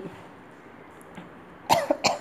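A short cough near the end, after quiet room tone.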